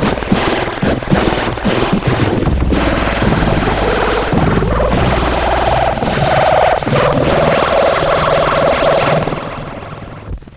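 Studio logo jingle played through heavy audio effects: a dense, distorted, rumbling wash with sustained notes coming through in its second half, fading out near the end.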